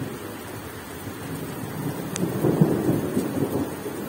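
Steady rain falling, with a roll of thunder that builds from about a second and a half in and is loudest near the end.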